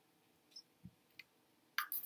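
Faint clicks from handling a homemade paper-cup anemometer while its safety-pin axle is loosened, three small ticks in the first second and a half. A short, louder rustle follows near the end.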